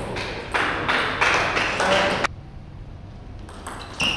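Table tennis ball pinging and bouncing in a sports hall, with voices in the first half. After a quieter gap, a few light ball ticks come near the end.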